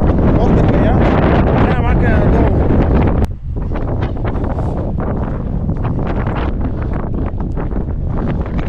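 Strong wind buffeting the camera's microphone. About three seconds in the sound breaks off and comes back a little lighter, with short crunching footsteps on a stony trail under the wind.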